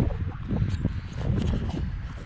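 Uneven low rumble of the camera being handled and swung about outdoors, with a few light knocks.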